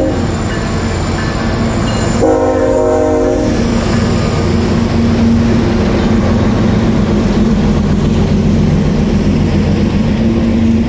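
Diesel freight train passing close by: a locomotive horn sounds one chord blast about two seconds in, lasting just over a second, over the steady rumble of locomotive engines and wheels on the rails as the trailing diesel units go by.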